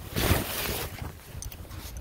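Rustling handling noise on a phone's microphone as the phone is swung around: a rush of noise about a quarter of a second in that fades to a lower rustle, with a few faint clicks near the end.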